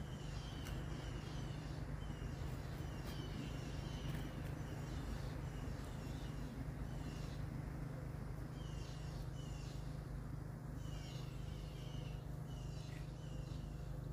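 A bird chirping over and over in short quick runs every second or two, over a steady low hum.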